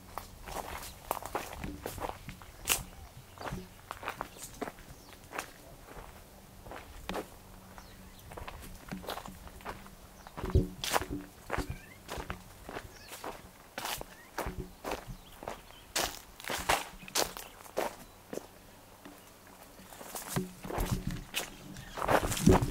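Footsteps walking over dry fallen leaves and bare dirt at an uneven pace, each step a short crunch, louder in a few clusters and near the end.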